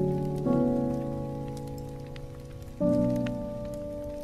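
Instrumental jazz piano chords held and slowly fading, a new chord struck about half a second in and another near the three-second mark. A log fire crackles underneath with scattered light pops.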